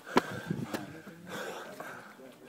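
Climbing on rough stone steps with a handheld camera. A sharp knock comes about a fifth of a second in, then scuffing and a second, smaller knock about half a second later.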